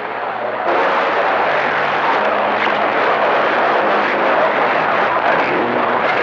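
CB radio receiver on the 11-metre band, channel 28, putting out heavy static and hiss with faint, garbled voices from distant skip stations buried in it. The noise jumps louder and brighter about two-thirds of a second in, as a stronger signal or carrier comes in.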